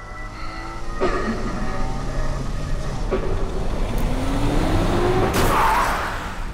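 A car engine revving with its pitch rising as it speeds up, building to a loud rush of noise near the end, under a music bed.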